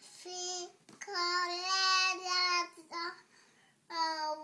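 A toddler singing long, steady, high notes in three or four phrases with short breaks between them. The longest note is held for about a second and a half.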